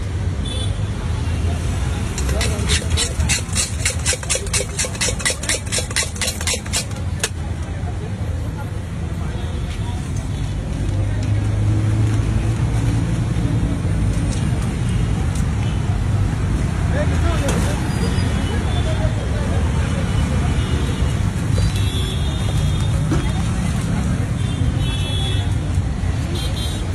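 Metal spoon clinking rapidly against a steel mixing bowl as bhel puri is tossed, about five strikes a second for roughly five seconds, then it stops. Voices and street traffic run underneath.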